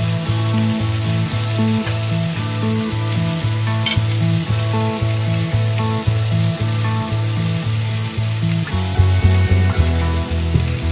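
A blue marlin steak sizzling on a grill pan, under background music with a steady beat and bass line.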